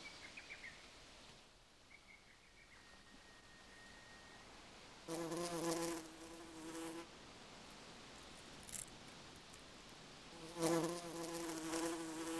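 Honeybee buzzing in flight, a pitched hum heard twice: about five seconds in for two seconds, then again from about ten and a half seconds on.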